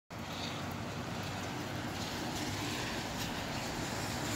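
Gusty wind and rain, a steady rushing noise.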